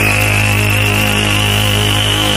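Electronic dance music build-up: a steady low synth drone under a sustained high synth tone that rises slowly in pitch.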